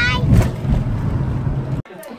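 Car interior rumble: a steady low engine and road hum heard inside the cabin, with a brief knock about half a second in. It cuts off suddenly near the end.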